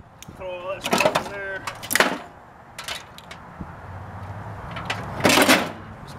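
Microwave oven transformer and loose scrap parts knocking and clattering as they are packed into the gutted microwave's metal cavity. There are sharp knocks at about one, two and three seconds in, and a longer clatter near the end.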